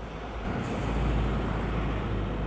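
Road traffic: a motor vehicle passing close by, its engine rumble and tyre noise swelling over the first second and staying loud.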